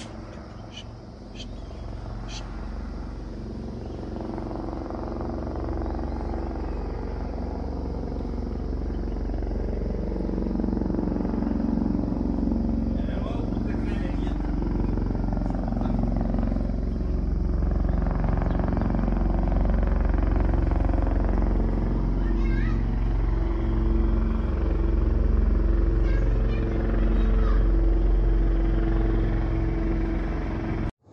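Helicopter flying overhead: a steady drone of rotor and engine that grows louder as it comes nearer.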